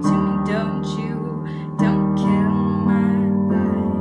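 Instrumental music with no singing: sustained chords that change about two seconds in and again near the end.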